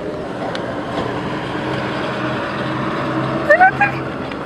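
A motor vehicle's engine running steadily close by, its drone building slightly, with a couple of brief rising squeaks near the end.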